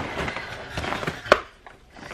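Rustling and handling of a plastic shopping bag being lifted and turned over, with one sharp knock a little over a second in, then quiet handling.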